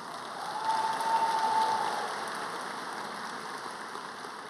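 Audience applauding, swelling about half a second in and slowly fading toward the end, with a faint steady tone over the first two seconds.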